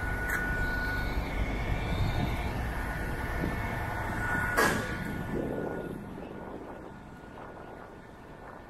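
Traffic rumble on a wet city street, fading away over the last few seconds, with a thin steady whine early on and a sharp short noise about halfway through.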